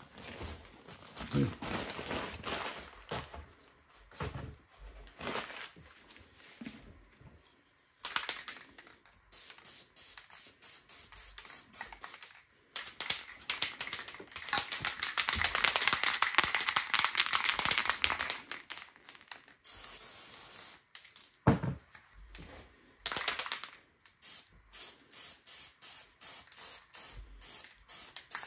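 Aerosol spray paint can hissing: runs of rapid short bursts, with one long spray of about six seconds in the middle.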